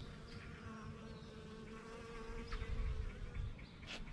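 Honeybees foraging on flowering white clover, their wingbeats making a steady buzzing hum, with a low rumble underneath.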